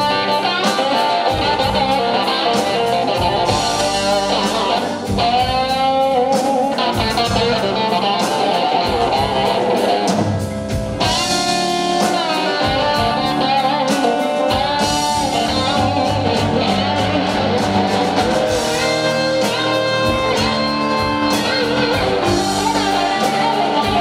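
A live blues band playing an instrumental passage: electric guitars lead with bent notes, over drums and the rest of the band.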